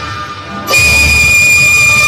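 Cantonese opera instrumental accompaniment. After a quieter moment, the ensemble comes in loudly about two-thirds of a second in, with one long held high note over a low rumble.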